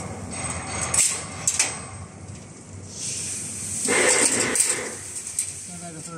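Chain link fence machine at work, with wire spirals handled on its steel table: a few sharp metallic clicks about a second in, then a hissing rush that swells and fades around the fourth second.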